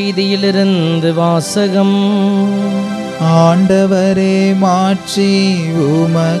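A priest chanting a Mass prayer in Tamil, held mostly on one reciting note with short melodic turns, pausing briefly between phrases.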